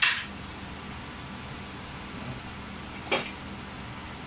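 Garlic, onion, ginger and chili sizzling steadily in a frying pan. Two short knocks of dishes or utensils land over it, one at the very start and one about three seconds in.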